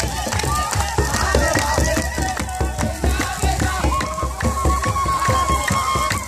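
Kebero drums beaten in a fast steady rhythm with hand-clapping and a group of voices singing, one voice holding a long high note about four seconds in.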